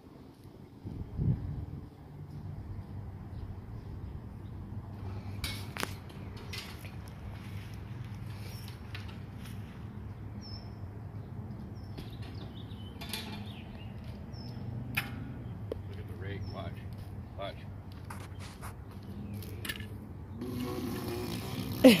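Outdoor background: a steady low hum with scattered light clicks and a few short high chirps, then louder activity and a laugh right at the end.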